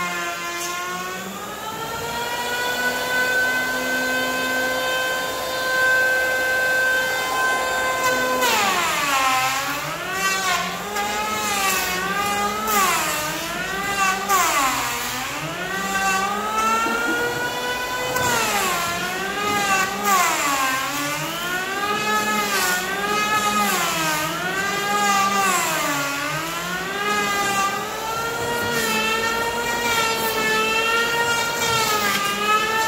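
Electric hand planer cutting a pine slab. Its motor holds a steady pitch for the first several seconds, then from about eight seconds in the pitch sags and recovers about every second and a half as the blades bite into the wood on each pass.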